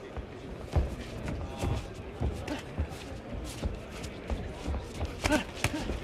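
Irregular sharp thuds and slaps from a boxing ring, boxing gloves landing and boots moving on the canvas, over the steady background noise of an arena crowd. A voice shouts briefly near the end.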